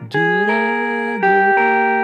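Electric guitar, a seven-string Tele-style solid body with a neck humbucker, playing a blues walk-down. A chord slides up into place just after the start, then steps down to a lower chord about a second in, each left ringing.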